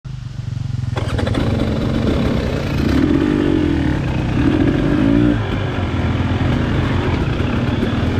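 2022 KTM 300 XC-W two-stroke dirt bike engine running under way, its revs rising and falling twice, around three and five seconds in.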